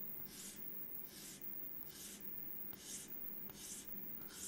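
Chalk drawn across a blackboard in about five short, faint strokes, one a little under every second, as straight lines are drawn one below another.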